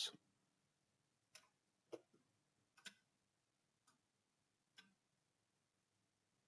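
Computer mouse clicking faintly a handful of times, single short clicks spaced about a second apart, in near silence.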